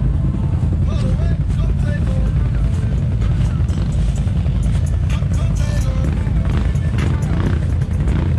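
Can-Am ATV engines running at low trail speed, a steady low drone throughout.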